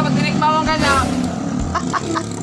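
A motor vehicle going past, loudest about a second in, under people talking.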